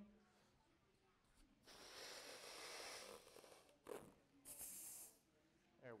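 Air rushing as a long twisting balloon is inflated, in two strokes: a long one of about two seconds, then a shorter one, with a short sharp sound between them.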